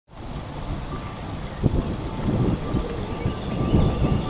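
Wind rumbling on an outdoor microphone, with a few soft low thumps from about a second and a half in.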